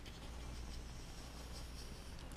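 Blue felt-tip permanent marker drawing a long wavy line down a sheet of paper: faint dry scratching strokes from a marker that is starting to run dry.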